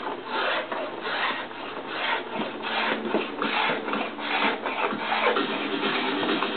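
Hand rasp scraping back and forth along a mahogany guitar neck, carving it to shape, about two to three strokes a second.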